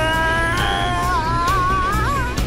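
A boy's long, high scream, held and wavering in pitch and rising near the end, over background music.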